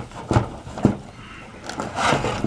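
Handling noise from a PC power supply in its cardboard box as its cables are pulled out: two short knocks and rustles in the first second, then quieter.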